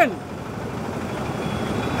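Street traffic noise: a motor vehicle's engine running nearby, a steady noise that grows slightly louder across the pause.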